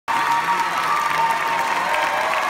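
Theatre audience applauding and cheering, a steady dense clapping.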